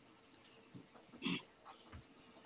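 Mostly very quiet, with a few faint breaths and one short breathy vocal sound from a person just past halfway.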